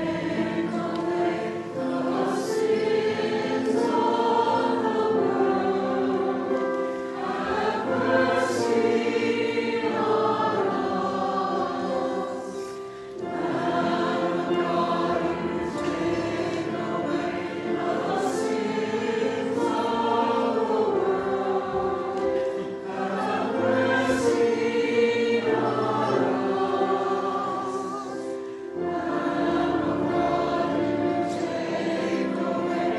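Small church choir singing a sacred choral piece in sustained, flowing phrases, with short breaths between phrases.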